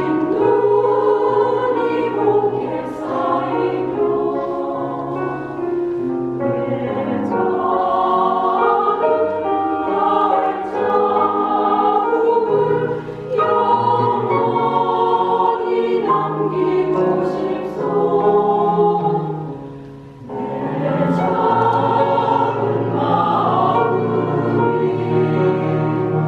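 Mixed choir of women's and men's voices singing a Korean choral song in harmony, in long sung phrases. The sound dips briefly about twenty seconds in at a phrase break, then the full choir comes back in.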